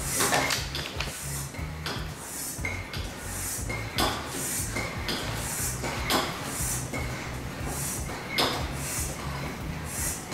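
A floor air pump worked in steady strokes, about one a second: each stroke is a hiss of air pushed through the hose into a sealed plastic bottle, often with a short squeak. The bottle is being pressurised before the stopper is released to form a cloud.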